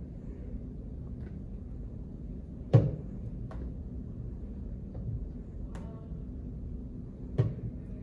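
Sneakered feet stepping up onto and down from a wooden step box in quick step-ups: a few soft taps and knocks, with two louder thumps, one about three seconds in and one near the end.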